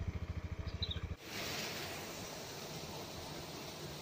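An engine idling with a quick, even pulse, which cuts off abruptly about a second in. A steady outdoor rushing noise follows.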